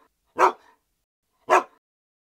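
A dog barking: two short single barks about a second apart.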